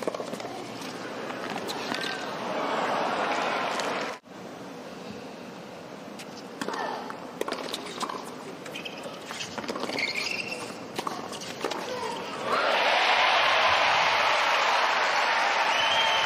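Tennis rally: a string of sharp racket strikes on the ball over a low crowd murmur, then about three-quarters of the way through the arena crowd breaks into loud applause and cheering as the point is won.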